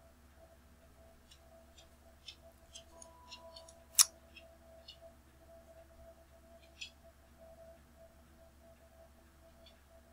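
Quiet room tone with a faint steady electrical hum, a few faint computer-mouse clicks, and one sharp click about four seconds in, just after a faint short tone.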